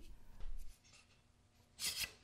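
Faint rubbing and scraping as the thin spearhead blade is handled in the slot of a wooden dowel. It goes nearly quiet in the middle, then a short, louder scraping rustle comes near the end as the blade is worked out of the slot.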